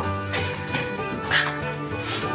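Background music playing steadily, with a small terrier giving one short, high yip about one and a half seconds in, excited as its food bowl is brought down.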